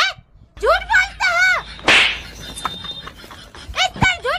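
A girl's high-pitched voice in a few short bursts, then about two seconds in a single sharp, noisy swish or crack, and her voice again near the end.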